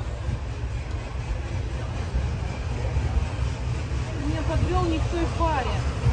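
Steady low rumble of background noise, with distant voices talking from about four seconds in.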